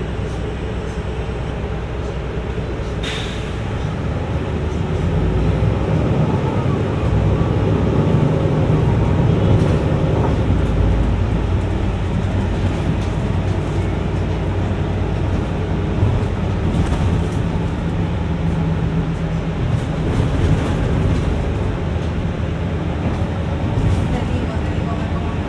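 Mercedes-Benz city bus heard from inside: its engine and drivetrain running as the bus pulls away from a standstill and gathers speed, getting louder about four seconds in. A short sharp sound comes about three seconds in.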